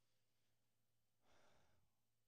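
Near silence, with one faint short breath into a handheld microphone about a second and a half in.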